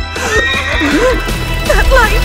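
A cartoon unicorn whinnying over background music, its call wavering up and down in pitch.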